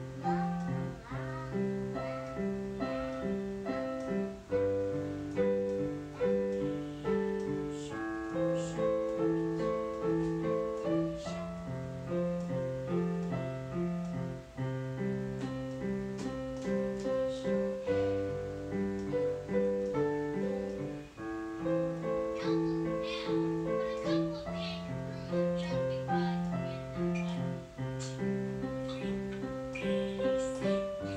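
Digital piano played with both hands: a steady pulse of repeated chords over held bass notes that change every few seconds.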